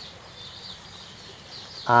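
Faint outdoor background with high, thin chirping, and a man's voice starting near the end.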